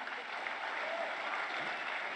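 Audience applauding, a steady clatter of many hands clapping.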